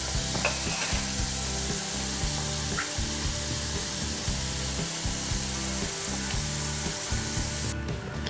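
Samosas deep-frying in hot oil in a pan: a steady sizzle of bubbling oil.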